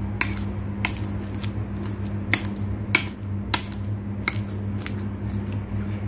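A metal fork mashing ripe avocado in a bowl by hand, its tines clicking sharply against the bowl about once or twice a second in an uneven rhythm. A steady low hum runs underneath.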